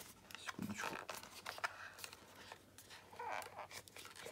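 Hands working a steel CO2 inflator loose from the zip ties holding it to its cardboard packaging card: faint scraping and rustling with scattered small clicks.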